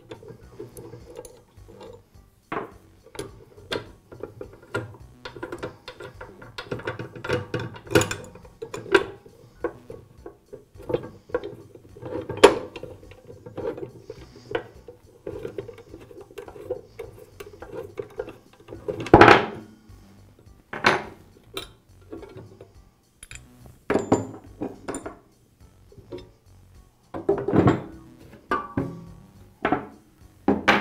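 Allen wrench turning the fence bolts on a chop saw's base: a run of light metal clicks and taps. It is followed by louder knocks and clunks as the fence and the plastic base are handled and set down on the workbench, the loudest a little past halfway.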